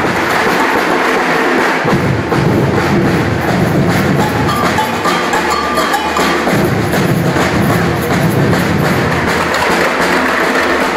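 Percussion band drumming a rhythm at a steady level.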